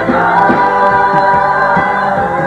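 Live gospel music: a group of backing vocalists sings held notes together over a live band.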